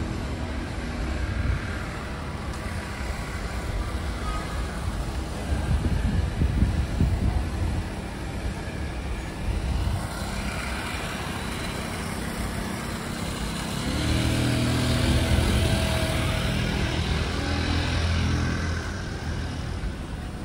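City road traffic: cars passing with a steady low rumble. One swell comes about a third of the way in. A louder engine hum passes close by in the second half.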